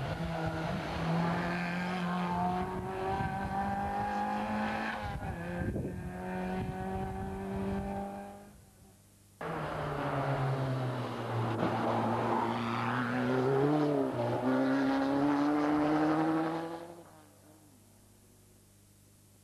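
Two rally car engines revving hard as the cars drive through tight tarmac bends, one after the other. The first engine note climbs steadily and fades out about eight seconds in. The second starts abruptly about a second later, dips briefly around two-thirds through, then climbs again and fades near the end.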